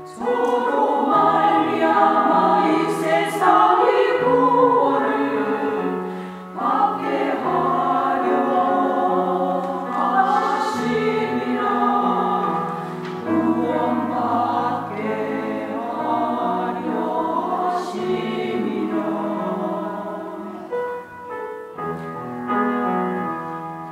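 Women's choir singing a Korean hymn in harmony over low, sustained accompaniment notes. The singing dips briefly about six seconds in.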